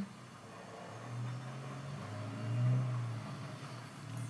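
A low droning hum that grows louder about a second in, swells a little before the three-second mark and then eases back.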